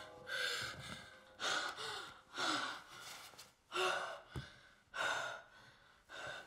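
A girl gasping and panting hard: five heavy breaths, about a second apart.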